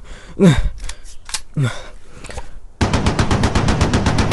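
A rapid burst of PPSh submachine-gun fire, about eleven shots a second, starting about three seconds in. Before it come two short falling cries from a man's voice and a few scattered knocks.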